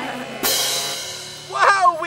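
A crash cymbal hit in edited-in music, struck about half a second in and ringing out over about a second before a voice comes in.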